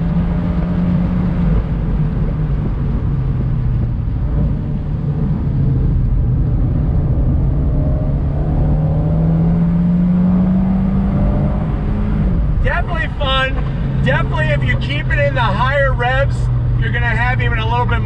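The 2019 Fiat 124 Spider Abarth's 1.4-litre turbocharged inline-four running under way, heard from the open cockpit with wind and road noise. Its pitch climbs slowly for several seconds, then drops suddenly about twelve seconds in and runs on steady.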